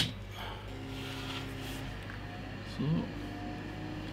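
The power switch of an HP 1650A logic analyzer switching on with a single sharp click, followed by a faint steady hum for a second or so as the unit starts up.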